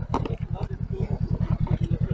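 Honda NC750X's parallel-twin engine idling at a standstill, a rapid, even low pulsing beat. Faint voices of people around.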